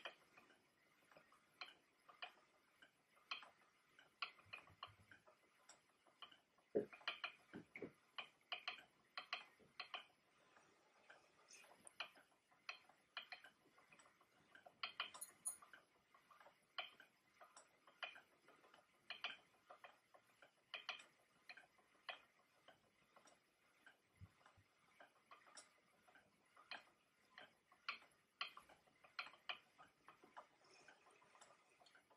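Wooden treadle spinning wheel running, its mechanism clicking faintly in a steady, slightly uneven rhythm of about one to two clicks a second as it is treadled.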